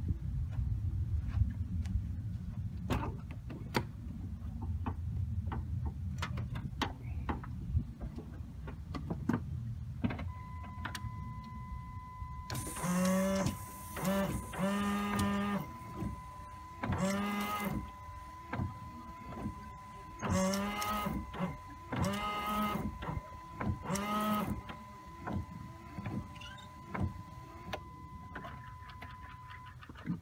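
Windshield washer and wiper motor of a 1996 GMC Suburban running in about seven short bursts, each rising in pitch as it spins up: the washer squirting again after its wiper-motor circuit board was re-soldered. A steady electronic warning tone sounds behind it from about a third of the way in.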